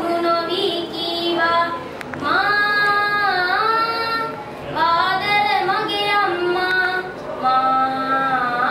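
A boy singing a Sinhala song solo and unaccompanied, in long held notes that bend and waver in pitch.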